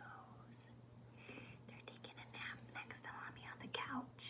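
A woman whispering softly, in short breathy phrases.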